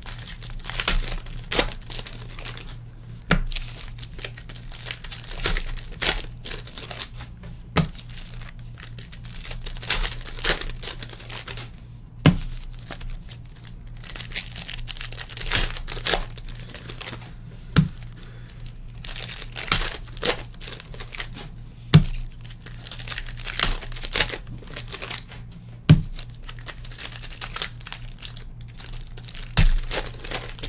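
Foil trading-card packs of 2013 Innovation basketball being torn open and crinkled by hand, with the cards inside handled, in repeated rustling bursts. A sharp tap comes every four to five seconds.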